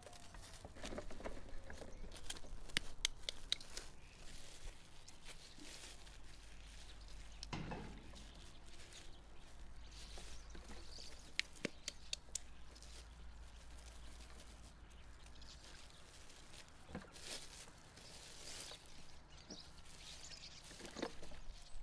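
Plastic cling film crinkling and rustling in short, scattered bursts as minced meat is wrapped around a boiled egg and squeezed into a ball by hand, with faint clicks of handling.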